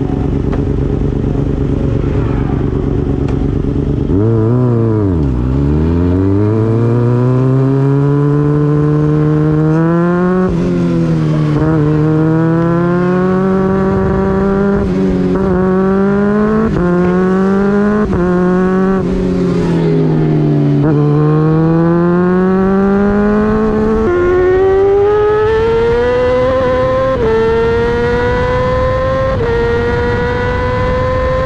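Racing motorcycle engine heard from a camera mounted on the bike: it idles steadily, then dips and pulls away. It revs up through the gears in a series of rising sweeps, each cut off by a quick drop in pitch at the upshift. About two-thirds through, the revs fall off briefly before it climbs again through three more upshifts, with wind rush on the microphone.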